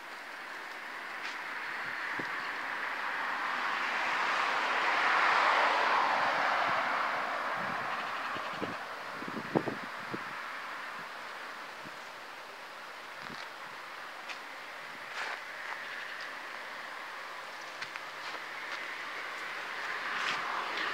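A passing vehicle: a rushing noise swells over the first five or six seconds and fades away by about twelve seconds in. A few light knocks come around nine to ten seconds in.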